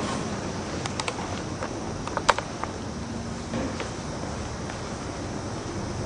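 Steady low room hum with a few short, sharp clicks, the loudest a little over two seconds in.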